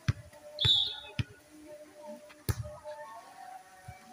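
A volleyball being struck during a rally: sharp slaps at intervals of about a second, the loudest about two and a half seconds in. A short shrill sound comes just under a second in, over faint background music.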